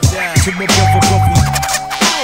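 Turntable scratching over a hip-hop beat with deep bass: a record pushed back and forth in quick sweeps that rise and fall in pitch. A steady held tone joins about a third of the way in.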